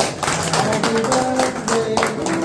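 A group of people clapping in quick rhythm, with a melody of held, stepping notes over the claps.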